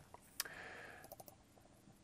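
One faint click about half a second in, then a soft brief hiss and a few light ticks; otherwise near silence.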